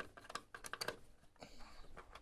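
Screwdriver turning the cover screw on the back of an old dial telephone: a run of faint, small clicks and scrapes of metal on the screw and plastic housing.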